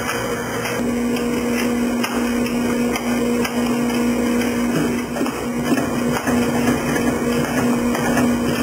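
Thompson Scale TSC-350 checkweigher running as packages ride its belt conveyor: a steady machine hum with a few sharp knocks, mostly in the second half.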